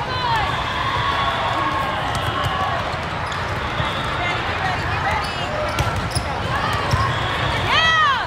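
Busy volleyball hall ambience: many overlapping voices chattering, with sneakers squeaking on the court floors and scattered sharp knocks of balls being hit and bounced, echoing in the large hall.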